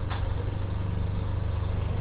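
A steady low engine drone, with no other event standing out.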